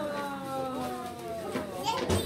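A voice holding one long, slowly falling exclamation, with children's voices around it during present opening.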